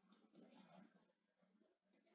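Near silence, with two faint computer-mouse clicks close together near the start.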